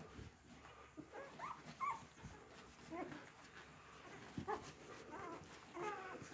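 Faint, short squeaks and whimpers from a litter of eight-day-old golden retriever puppies while they nurse, scattered through the moment with some rising in pitch.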